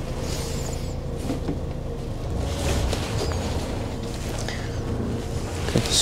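Irizar i6 coach's diesel engine running at low revs, heard from inside the cab while the coach creeps slowly backwards into a parking spot: a steady low rumble with a faint constant whine over it.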